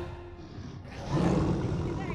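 The end of a pop-style children's song dies away, then about a second in a group of children let out a loud, playful roar.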